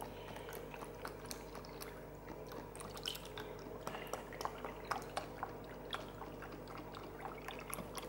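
Almond milk pouring from a carton into a plastic bowl of protein powder: a faint stream with many small splashes and bubbling drips. A steady low hum runs underneath.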